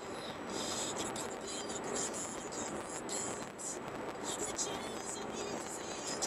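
Steady car road and engine noise heard inside the cabin, with a talk radio voice playing faintly underneath.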